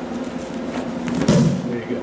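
A brief vocal sound about a second in, over a steady low hum.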